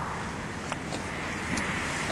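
Steady outdoor background noise, an even rumble and hiss with no distinct event, and a faint click about three-quarters of a second in.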